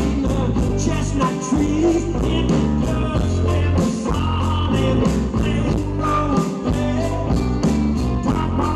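Live band playing with acoustic and electric guitars, banjo and a drum kit keeping a steady beat.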